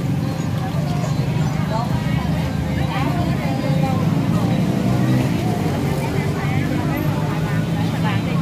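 Busy street ambience: a steady rumble of passing traffic under overlapping voices of people chatting around the sidewalk food stalls.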